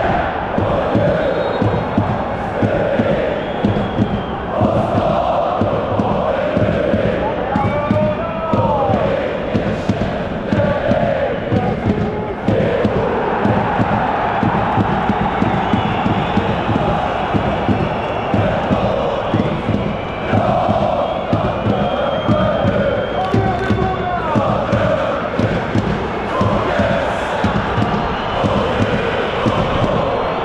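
A large football supporters' section chanting together, a loud, unbroken wall of many voices.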